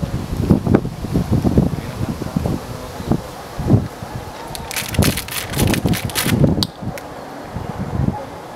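Wind buffeting the microphone in uneven low gusts, with a brief burst of crackling rustle about five seconds in.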